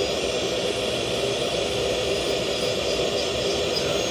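Dental lab micromotor handpiece running steadily with a tapered carbide bur, grinding the pink gingival underside of a full-arch implant bridge to trim it down to a flat, minimal tissue contact. A steady whine with no change in pitch.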